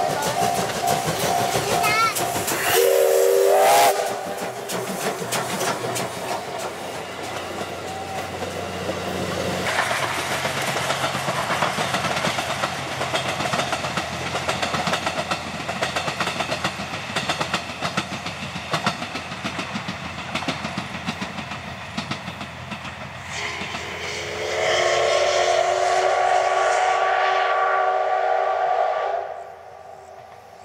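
C57 steam locomotive sounding a short steam whistle about three seconds in, over a level-crossing bell that is ringing at the start, then running past with dense clatter from its exhaust and coaches. Near the end it gives a second, long chord-like whistle lasting about five seconds before the sound drops away.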